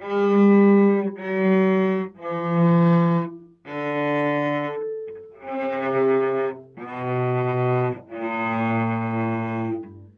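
Cello bowed by a beginner: seven separate, sustained notes of about a second each with short breaks between them, stepping down in pitch. Underneath there is a crackling noise, which the player puts down to a recording fault.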